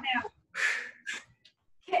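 Two quick, forceful breaths pushed out with the kicks: a hissing exhale about half a second long, then a shorter one, between spoken counts.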